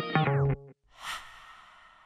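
Intro music with electric guitar that slides down in pitch and cuts off about half a second in. About a second in comes a single breathy whoosh effect, which fades out slowly with a long echoing tail.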